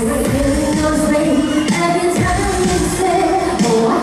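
Upbeat Vietnamese pop song performed live on stage: a singer over an amplified backing track with a steady beat.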